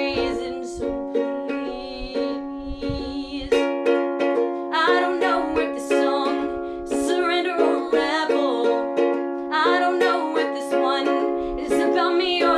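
A ukulele strummed in a steady rhythm, with a solo voice singing over it.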